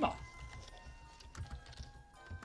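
Computer keyboard being typed on: a handful of scattered, light key clicks as a character is entered.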